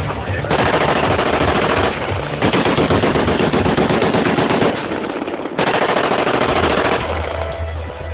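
Three long bursts of rapid automatic gunfire, each lasting one to two seconds with short gaps between: celebratory shots fired into the air.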